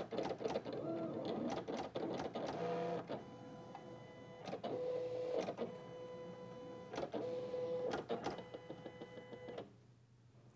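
Digital cutting machine plotting with a pen in its blade holder: its carriage and roller motors whine in stretches of a second or so as the pen traces the lettering, broken by sharp clicks. The machine falls silent just before the end, as the drawing finishes.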